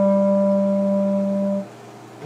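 Solo wind instrument holding one long, steady low note for about a second and a half, then stopping briefly between phrases.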